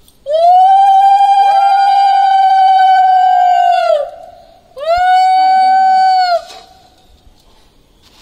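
Conch shell (shankha) blown at a Hindu puja: a long, loud blast that swells up in pitch and holds steady for nearly four seconds, with a second, lower tone joining partway through, then a shorter blast about a second later.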